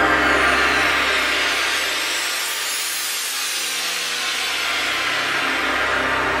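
Intro music for an animated title sequence: a long rushing whoosh swells up and slowly fades, while the low bass drone drops out about two seconds in and comes back near the end.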